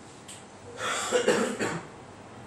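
A person coughing: a short run of coughs lasting about a second, starting just under a second in.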